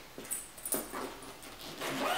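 A soft nylon tool bag being handled and opened: a few short rustles and scrapes of fabric and zipper in the first second.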